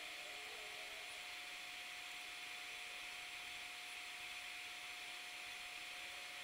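Faint, steady hiss, strongest in the upper middle of the range, with a thin steady whine underneath at a fixed pitch. It is the background noise of the electronics bench; the player's frequency sweep itself is not heard.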